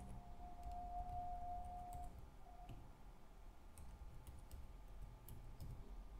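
Faint computer keyboard typing: scattered soft key clicks. A faint steady tone sounds for about the first two seconds.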